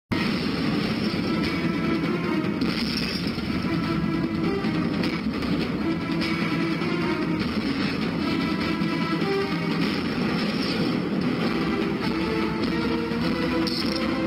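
Opening theme music of a TV news programme: a dense music track that plays steadily throughout.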